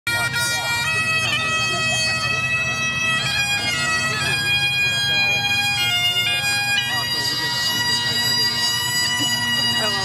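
Bagpipe music: a slow melody of held notes stepping from one pitch to the next over a steady drone.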